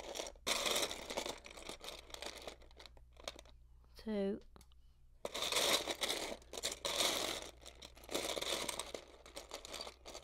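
Hands rummaging through loose plastic Lego pieces, searching for a part: dense rattling and rustling in two long spells, about a second in and again from about five seconds. A short hummed vocal sound comes just after four seconds.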